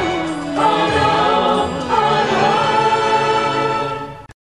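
Music: a song with a singing voice over sustained accompaniment, its melody gliding from note to note.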